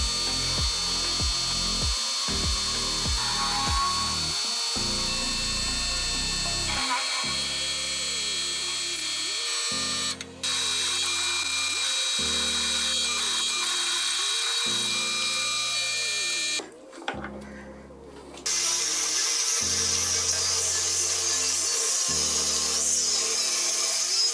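A drill press boring into a solid steel block, a steady high whine, with a brief break about ten seconds in. After a longer pause late on, an angle grinder cuts steel. Background music with slow repeating chords plays throughout.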